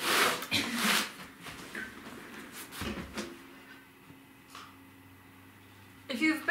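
Wooden boards and a plastic tarp being handled: loud rustling and scraping in the first second, quieter rustles and clicks after, and a dull thump about three seconds in. A faint low hum runs through the last few seconds.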